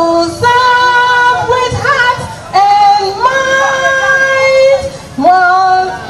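A woman singing solo into a microphone, holding long, steady notes in three phrases with short breaths between them.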